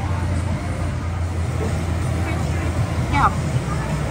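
A steady low rumble with faint background chatter of other people. A short spoken word comes near the end.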